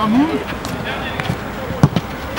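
A single sharp thud near the end, a football being struck during shooting practice, over faint outdoor background.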